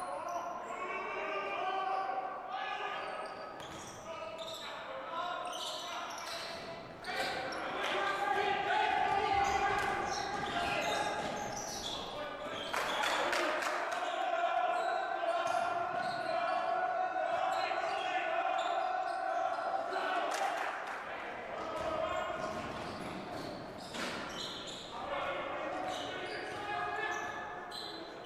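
Basketball game sound in a large gym: a ball being dribbled on a hardwood court, with players' and onlookers' voices calling out and echoing in the hall.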